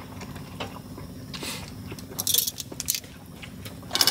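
Metal tongs clicking and scraping against a skillet and a metal plate as food is served: scattered light clicks with a few short scrapes in the middle, over a steady low hum.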